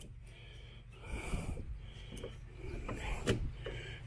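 Faint rubbing and handling noises, with one sharp click a little over three seconds in.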